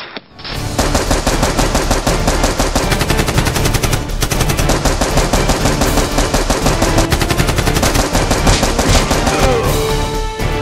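Rapid, sustained machine-gun fire sound effect, starting just under a second in after a brief near-gap and running on without pause.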